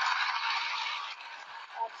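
Studio audience applauding, dying down about a second in.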